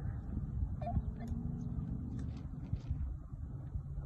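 Wind buffeting the microphone on an exposed mountaintop, a low, uneven rumble with a few faint ticks.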